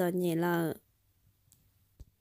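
A woman's voice narrating in Hmong, a drawn-out syllable ending just under a second in, followed by a pause broken by a couple of faint clicks.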